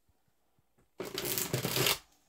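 A tarot deck being riffle-shuffled: a few faint card-handling clicks, then about a second in a loud, fast flutter of the two halves' cards riffling together for about a second.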